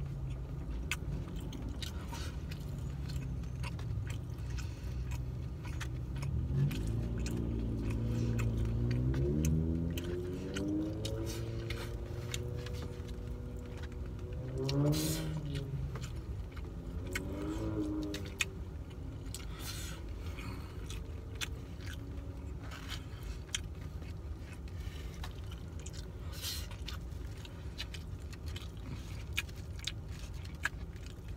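A person chewing food, with short clicks and scrapes of a plastic fork in a foam takeout container, over a low steady rumble. From about six seconds in, a pitched hum rises, holds for several seconds and swells twice more before dying away around eighteen seconds.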